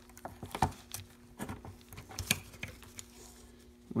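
Irregular light clicks and taps of metal parts as a Shimano Deore XT M735 rear derailleur is handled, its cage twisted around against the spring to line up a pin hole, over a faint steady hum.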